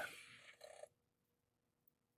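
Near silence: faint room tone, with a couple of very faint ticks a little under a second in.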